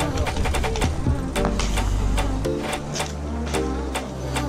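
Background music with a steady beat over a held bass line that shifts to a new note about halfway through.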